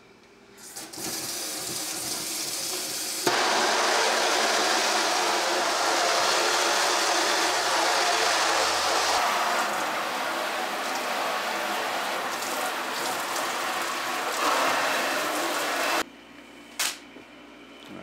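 Handheld kitchen-sink sprayer blasting water onto a screen-printing screen, washing the unexposed emulsion out of the mesh to open up the burned image. The spray starts softer, gets louder about three seconds in, runs steadily and cuts off sharply near the end, followed by a couple of clicks.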